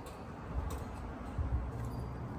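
Quiet outdoor background noise: a low rumble that gets a little stronger past the halfway point, with a faint tick about two-thirds of a second in.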